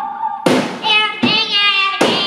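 A child singing a wavering note into a microphone, with two sharp drum hits, about half a second in and just past a second.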